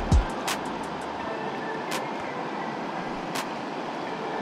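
Steady rush of a clear, fast river running over stones, with three short sharp clicks; a last low note of background music dies away right at the start.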